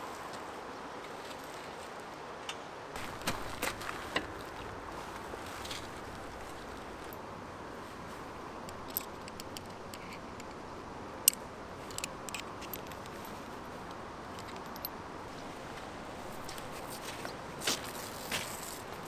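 Steady outdoor background hiss with a few short light clicks and taps from the parts of a blue motorcycle trail stand being handled and fitted together, the sharpest a little after the middle.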